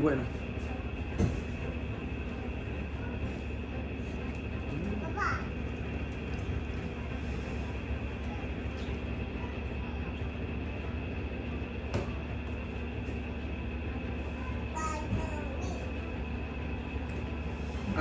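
A steady mechanical hum of a machine running in the room, with a few faint clicks and a short voice sound about five seconds in.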